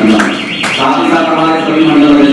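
A high warbling electronic tone, rising and falling several times a second, starts just after the opening and carries on, heard over a man talking through a microphone.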